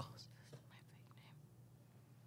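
Near silence: a faint whispered or mumbled voice trailing off in the first second, then quiet room tone with a low hum.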